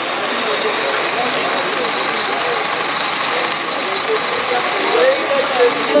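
Loud, even crowd noise with voices calling out over it.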